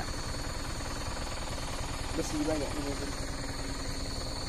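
Truck engine idling with a steady low rumble while the vehicle sits stopped, with a steady high-pitched insect chirr, like crickets, running alongside.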